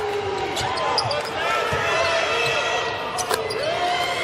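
Basketball being dribbled on a hardwood court during live play, a few separate bounces, with voices calling out in the arena.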